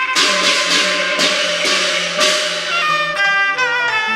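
Cantonese opera accompaniment ensemble playing an instrumental passage: about half a dozen ringing percussion strikes over sustained bowed strings in the first two seconds or so, then a melodic string line with sliding notes.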